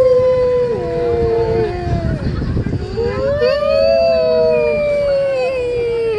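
Long, drawn-out "whoo" calls from riders' voices, each held for a second or more and sliding slowly down in pitch, sometimes two voices overlapping. There is a short break near the middle, then a new call rises and falls away. Underneath runs a low rumble of wind on the microphone from the ride's motion.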